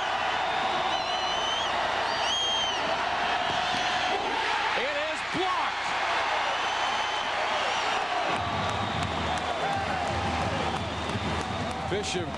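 Football stadium crowd cheering loudly and steadily, with whoops and whistles, as a field goal attempt is blocked. A low hum joins in about eight seconds in.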